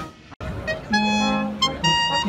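Military brass band playing held chords on tubas and trumpets. The sound breaks off briefly about a third of a second in, then the band comes back with long sustained notes that change chord twice.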